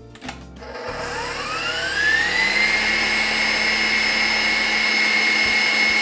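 Electric stand mixer with a wire whisk speeding up to high: its motor whine rises in pitch about a second in, then holds steady as it whips egg whites with hot sugar syrup into meringue.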